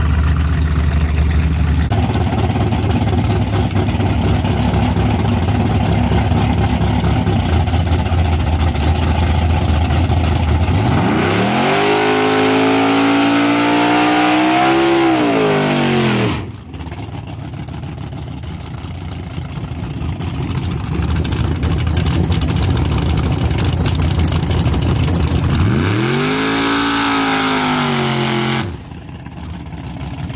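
Street-race car engines running loud and steady, then revved up and back down twice, each rev lasting a few seconds; the first rev comes from a silver Chevy Nova. Each rev ends in a sudden break.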